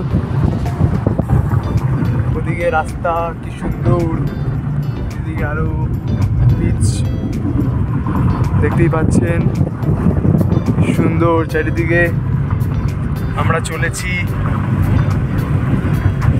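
Steady low rumble of a car's road and engine noise heard from inside the cabin while driving, with voices over it now and then.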